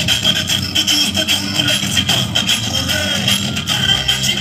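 Dance music playing loudly and continuously over a sound system, with a harsh, noisy edge.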